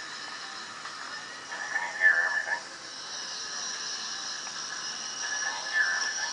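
Faint, tinny voice sound relayed by the iPod touch's small speaker from the GoPro's live preview, with a steady high ringing tone building from about halfway: the start of acoustic feedback between the camera's microphone and the speaker.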